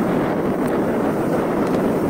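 Mountain bike riding noise on a loose gravel dirt track: wind buffeting the camera microphone over tyres rolling on stones, a steady rushing with a faint click or two.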